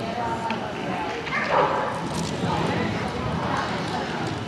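A dog barking as it runs, over people's voices and general hall noise.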